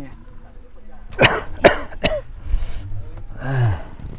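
A sick man coughing three times in quick succession, then a short voiced sound falling in pitch near the end.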